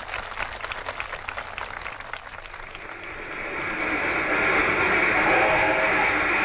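Audience applauding: scattered hand claps at first that thicken into steady, louder applause about halfway through.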